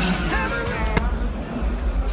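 Male voice singing a rock/metal phrase with electric guitar, fading out within the first second. A sharp click follows, then a low rumble and background noise.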